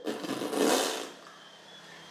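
Adhesive breast tape being peeled off skin: a short rasping rip that fades out about a second in.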